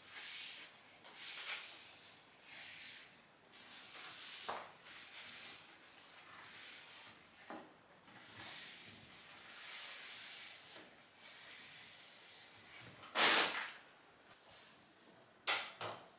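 Cloth rubbing over the broad leaves of a rubber plant: soft, repeated wiping swishes with a few light clicks. Near the end, a louder swish lasting about a second, then a short sharp knock.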